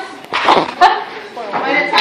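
Young voices making short, high-pitched exclamations that rise and fall in pitch, with a sharp click among them.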